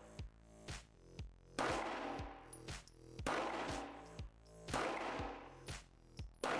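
Background music with a steady beat.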